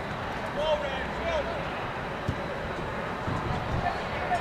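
Distant voices of soccer players calling out across the field, a few shouts clustered in the first second and a half, over a steady low outdoor rumble.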